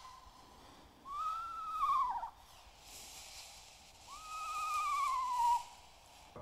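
Recorded eastern screech owl whinny played from an iPod: two quavering calls about three seconds apart, each a little over a second long, rising slightly and then falling away at the end.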